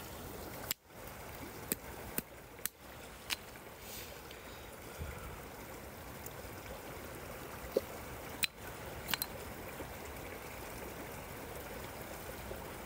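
A hand-held stone knocking down on apricot pits laid on a flat rock, cracking their shells: about seven short, sharp knocks, several in quick succession early and a few more near the end. A small stream runs steadily behind.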